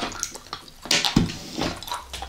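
Close-miked wet mouth sounds of candy eating: lips smacking and sucking as small gummy candy pieces are picked up off the table by mouth and chewed, with a few sharp wet clicks, the loudest about a second in.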